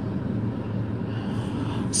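Steady background noise with a faint low hum, in a pause between talking and singing.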